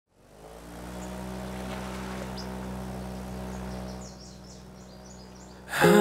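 Ambient intro: a low, steady drone fades in, and from about four seconds in a run of quick, high bird-like chirps sounds over it. Just before the end the song's music and a woman's singing come in loudly.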